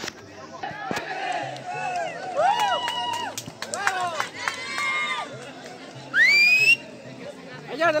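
A group of young men shouting a team cheer, with loud voices rising and falling over each other. About six seconds in comes a loud whistle that rises in pitch.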